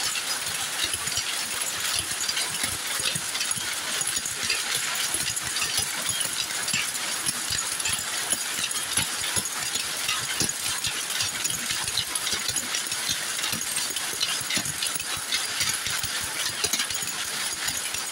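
Power looms weaving: a dense, steady clatter of rapid knocks and clicks from several looms running at once.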